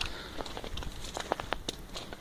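Footsteps in wet snow: scattered soft crunches and clicks, uneven in timing.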